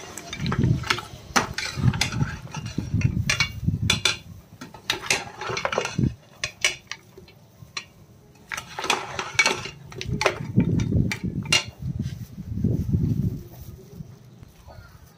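Steel ladle scraping and clinking against the inside of a pressure cooker as mutton trotters in thick masala are stirred, in irregular strokes with a short lull in the middle.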